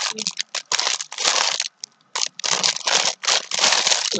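Clear plastic packaging crinkling in short, irregular bouts as it is handled and pulled at.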